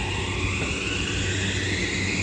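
Toei 5500-series electric train pulling away from a station. Its traction inverter and motor whine rises steadily in pitch as the train gathers speed, over a low running rumble.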